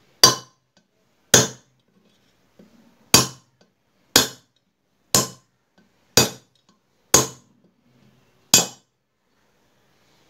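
Hammer blows on a steel drift rod driving a bearing out of a Bajaj CT 100 aluminium crankcase half: eight sharp metallic strikes, roughly one a second.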